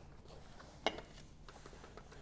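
Quiet room tone with one short, sharp click a little under a second in, and a few fainter ticks later.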